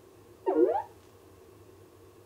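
Jibo social robot's short electronic chirp about half a second in, its pitch dipping and then gliding up.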